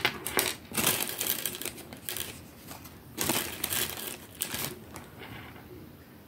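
Beads being handled and picked through while they are threaded onto choker wire: rustling with small clicks, in several short spells.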